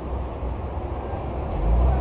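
Low, steady street-traffic engine rumble, swelling near the end as a Chevrolet Trailblazer SUV drives off past the microphone.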